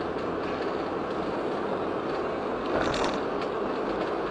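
Steady road and tyre noise of a moving car heard from inside its cabin by the dashcam, with a brief louder rattle a little under three seconds in.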